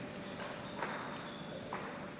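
A table tennis ball knocking sharply three times on table or bat, two knocks about half a second apart, then a third a second later.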